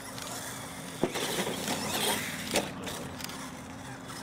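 Radio-controlled monster truck driving across artificial turf, its motor and tyre noise swelling about a second in, with two sharp knocks, one about a second in and one about two and a half seconds in.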